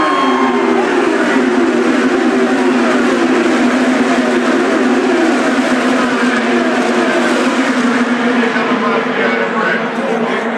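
A pack of IndyCar race cars with twin-turbo V6 engines running flat out past the grandstand. Their loud, continuous engine drone is overlaid with the rising and falling pitch of individual cars passing, and the pitch of a passing car drops sharply at the very start.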